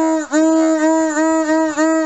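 Hand-worked brass fog horn sounding a loud, steady, reedy note in a quick run of short blasts, each with a brief dip in pitch and level between strokes.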